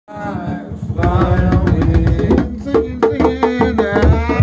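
Group drumming on hand drums, including a large barrel drum, beaten in a fast, busy rhythm, with voices singing over it.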